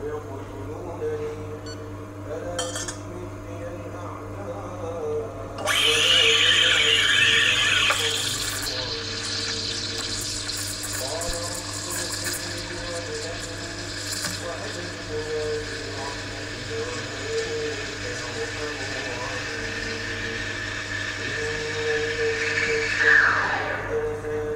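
Lelit Bianca espresso machine's steam wand steaming milk in a stainless pitcher. The hiss starts suddenly about six seconds in and is loudest for the first two seconds. It then settles to a steadier, quieter hiss and ends with a falling tone near the end.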